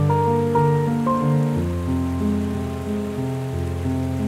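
Solo piano playing slow, sustained chords with heavy reverb; a new low bass chord enters about a second and a half in as the upper notes fade.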